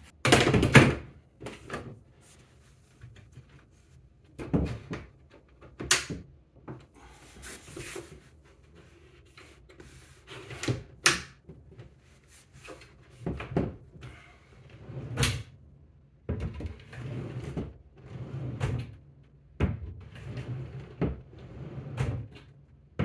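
Wooden vanity drawer being fitted onto its soft-close metal slides and worked in and out: a string of knocks, clicks and short sliding scrapes, the loudest about half a second in.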